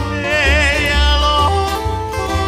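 Hawaiian string-band music: a singer holds a wavering note about half a second in, over guitars and a steady low bass line.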